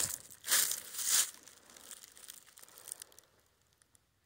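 Footsteps crunching through dry fallen leaves: two loud crunches about half a second and a second in, then softer rustling that dies away.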